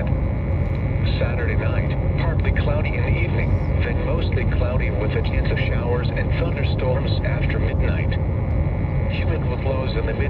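Automated NOAA Weather Radio voice reading the forecast through a radio receiver, half-buried under steady static and low rumbling hum, the words indistinct.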